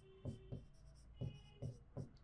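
Marker pen writing on a whiteboard: about five short, faint strokes.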